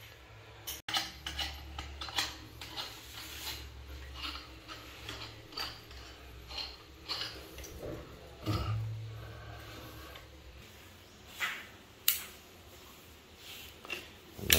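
Faint, scattered light taps and clicks as a stainless steel faucet is handled and positioned on a marble countertop, over a low steady hum.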